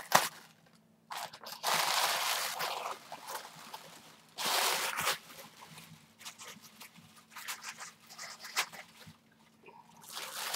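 Tissue paper and tape crinkling and tearing as a heavily taped package is pulled at by hand: two longer bursts of rustling in the first half, then scattered small crackles.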